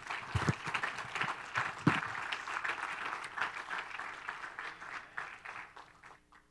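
Church congregation applauding, a dense patter of hand claps that thins out and dies away near the end, with a couple of low thumps in the first two seconds.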